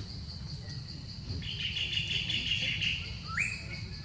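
Steady, pulsing insect buzzing, joined for about two seconds in the middle by a louder, higher buzzing trill. Near the end comes a short chirp that rises in pitch and then holds.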